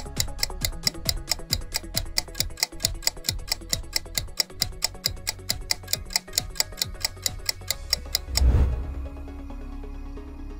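Quiz countdown-timer ticking sound effect, about four ticks a second, over a low music bed. The ticking stops about eight seconds in with a loud low swell as the timer runs out, and the steady low background carries on.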